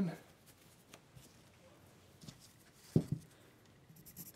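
Faint rustling of a cotton work glove being pulled on and the carving handled, with one short dull knock about three seconds in.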